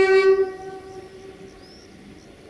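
Horn of a CFR class 060-DA (Sulzer LDE2100) diesel-electric locomotive: one loud pitched blast that cuts off about half a second in, its sound fading away over the following second.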